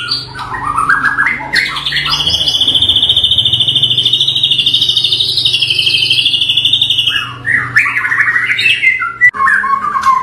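White-rumped shama of the Bahorok local variety singing loudly. A few short rising phrases lead into a long, very rapid trill held at one pitch for about six seconds, followed by more varied phrases near the end.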